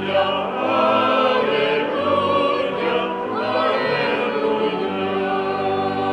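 Church choir singing a slow sacred piece, with steady held chords sounding beneath the voices.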